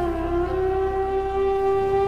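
Soft instrumental music: one long held note that dips slightly in pitch as it comes in, then stays steady.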